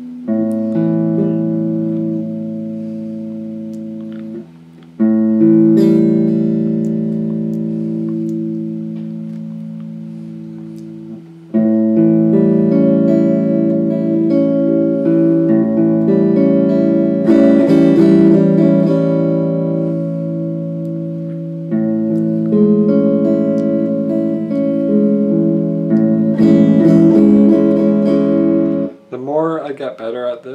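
Stratocaster-style electric guitar playing picked chords that are left to ring and slowly fade, with new chords struck about five, eleven and a half and twenty-two seconds in and single notes picked over them; the playing stops about a second before the end.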